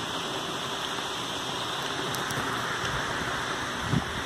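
Steady rushing splash of a decorative pond fountain, its spray falling back into the water. A brief soft knock comes just before the end.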